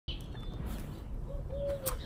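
Outdoor bird calls over faint background haze: a faint high chirp near the start, then one soft, low, steady note lasting about half a second in the second half.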